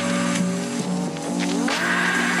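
A car engine revving up, its pitch rising steadily for over a second, set into a phonk track over its held bass notes.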